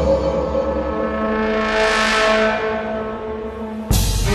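Dramatic intro music: a deep gong-like hit rings on as a sustained chord, with a whooshing swell that rises and falls in the middle. A louder music track cuts in abruptly near the end.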